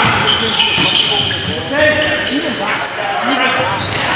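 Live basketball game sound in a gym: a basketball dribbled on the hardwood court, sneakers squeaking in short high chirps, and players calling out to each other.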